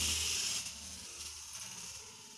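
A small plastic Kinder Joy toy's geared wind-up mechanism whirring as the toy runs across a tiled floor. The whir is loudest in the first half second or so, then fades as the toy moves away.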